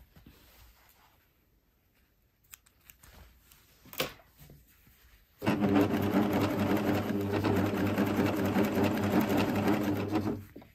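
Coverstitch machine: after about five seconds of near quiet broken by a few light clicks, it starts and runs at a steady, even speed, sewing off the end of the hem onto a scrap of cloth.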